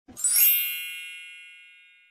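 Logo-intro sound effect: a single bright electronic ding that rings out and fades away over about a second and a half, with a short burst of noise as it starts.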